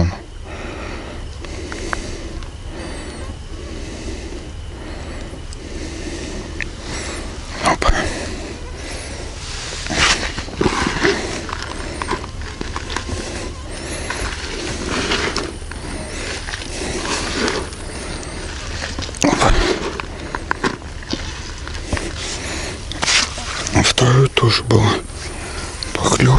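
Hands rustling and crumbling dry fishing groundbait in a fabric bucket, in short bursts, over a steady low background hum.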